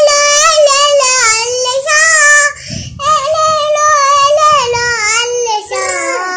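A young girl singing a Tamil song alone, with no accompaniment, in a high voice. She holds long notes with a wavering pitch, breaks off briefly near the middle, and steps down in pitch near the end.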